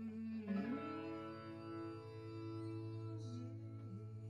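Live band music: an electric guitar strikes a chord about half a second in and lets it ring out over a low sustained note, with a short sliding note near the end, as at the close of a song.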